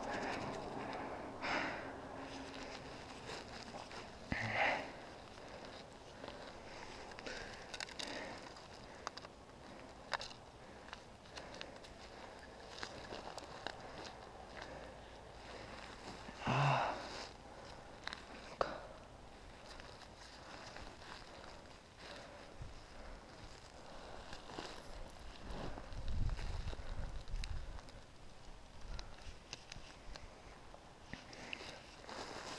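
Faint handling noise from a player crouched in snow working with his hands and gear: clothing rustle and scattered small clicks, with short louder bursts about 4 and 17 seconds in and a low rumble a little before the end.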